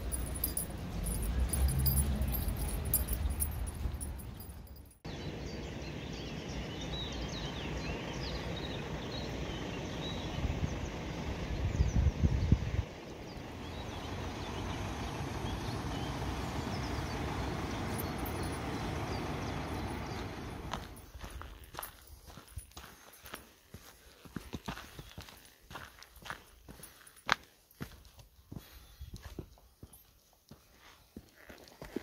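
Outdoor camera-microphone ambience in several abrupt cuts: a low rumble of wind on the microphone, then a steady even hiss, then in the last third irregular footsteps and small knocks on rocky ground.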